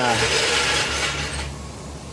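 Body-shop background noise: a steady rushing, hiss-like noise that dies away about a second and a half in.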